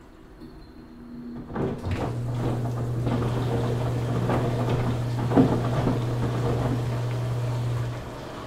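Washing machine starting up about a second and a half in: its motor settles into a steady low hum as the drum turns, with rattling and knocking over it and one louder knock about five seconds in. The hum stops at the end.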